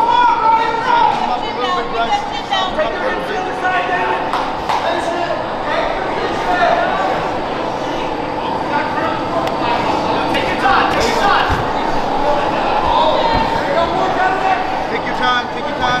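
Many people shouting and talking over one another, with no single voice clear. A man calls "There you go" to a fighter at the very end.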